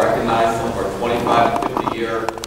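A man speaking into a lectern microphone, with a few quick clicks or taps near the end.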